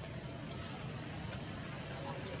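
Steady outdoor background rumble, heaviest in the bass, with a couple of faint clicks about half a second and just over a second in.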